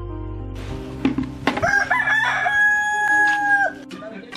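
Rooster crowing once: a rising cock-a-doodle-doo that ends on a long held note. The tail of a soft background tune dies away in the first second.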